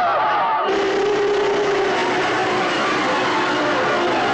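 Film soundtrack of a crowd of men shouting over background music. Under a second in it cuts abruptly to a denser, noisier mix, with a steady held tone for about a second.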